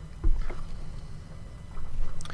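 A dull low thump about a quarter second in and a smaller one just after, over a steady low electrical hum.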